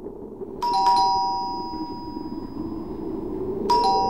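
Two-tone doorbell chime, ding-dong, rung twice: a higher note then a lower one, each ringing out and fading, the first about half a second in and the second near the end. A faint low hum lies underneath.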